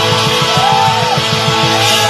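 Live rock band playing an instrumental passage: guitar holding sustained lead notes, one bent up and back down about halfway through, over a fast, steady drum-kit beat with cymbals.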